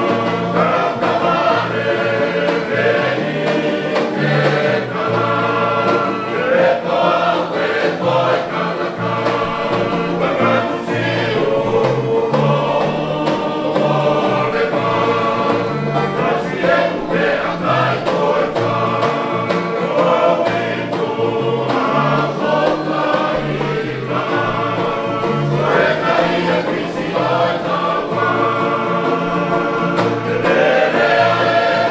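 Tongan string band playing tau'olunga music: a group of men singing in harmony over strummed acoustic guitars, ukuleles and banjo, with a steady strummed rhythm.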